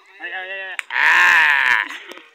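Ploughman's drawn-out, wavering shouts driving a pair of oxen: a shorter call, then a louder, longer one about a second in.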